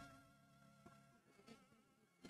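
Near silence: a faint, slightly wavering high tone with two soft ticks.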